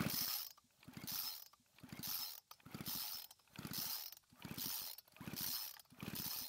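Recoil pull-starter of a two-stroke string trimmer being pulled about seven times, a little under a second apart, each pull spinning the engine over briefly. The engine does not fire, because its spark plug is out and grounded against a screwdriver for a spark test.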